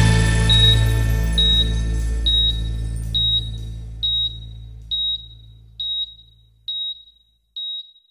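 The last chord of a rock song rings on and fades away over about seven seconds. Under it a high electronic beep repeats a little faster than once a second, and near the end the beep is left alone.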